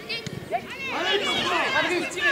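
Several voices on a football pitch shouting and calling over one another.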